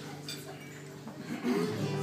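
Amplified guitars holding a steady chord under murmuring voices; a louder voice comes in about one and a half seconds in.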